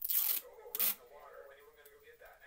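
Two short rustling scrapes of paper in the first second, the second briefer than the first.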